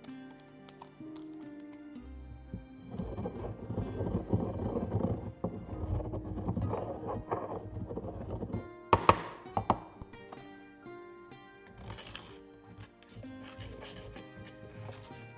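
Stone mortar and pestle grinding dry spices, a gritty rubbing and crushing for several seconds, then a few sharp knocks of the pestle against the mortar about nine seconds in, over background music.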